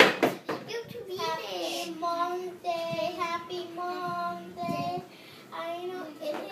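A young boy singing a slow tune with long held notes, the words unclear. A sharp knock sounds at the very start.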